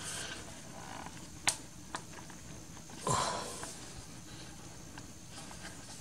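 Faint handling noise from fingers working at the edge of a thin sheet-metal LED floodlight housing, trying to pry it open: one sharp click about a second and a half in, a lighter tick soon after, and a short rustle around three seconds.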